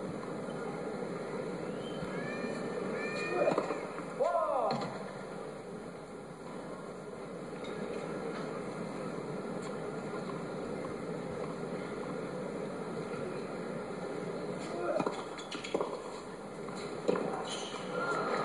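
Television tennis broadcast sound picked up from the TV's speaker: a steady background hiss with a few brief, faint voices, about 2 to 5 seconds in and again near the end.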